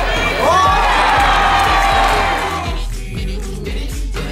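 A few players shouting and cheering as a goal goes in, with a rising whoop about half a second in, over background pop music with a steady beat. The shouting dies away near three seconds in.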